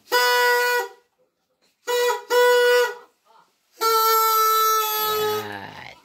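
Party horn blown in four blasts, each a single steady tone: a long one, two short ones close together, then a longer one whose pitch sags at the end.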